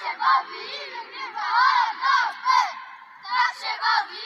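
A group of children shouting and cheering together in high-pitched, repeated shouts, celebrating a goal.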